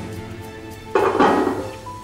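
Soft background music with held notes; about a second in, a short metallic clatter of a metal serving cloche being handled on a china plate.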